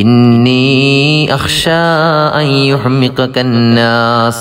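A man chanting a melodic religious recitation, holding long drawn-out notes that slide in pitch, with a short break about one and a half seconds in.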